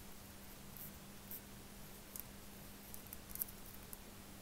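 Faint scratching of a 0.3 fineliner nib (Copic Multiliner) on paper in a few short strokes as words are written.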